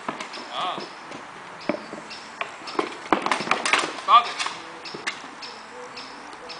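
Irregular sharp knocks of weapons and shields striking during a gladiator sparring bout, with a quick run of blows a little past the middle. Short voices come in among them, the loudest a brief rising cry about four seconds in.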